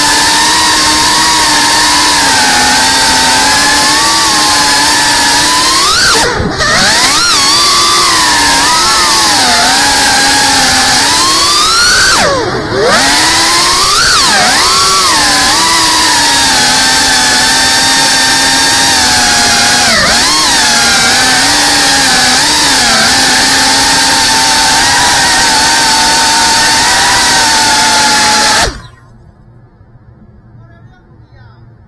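FPV quadcopter's brushless motors and propellers whining, the pitch swooping up and down with the throttle. The whine twice dips briefly and surges back as the throttle is chopped and punched, then cuts off suddenly near the end.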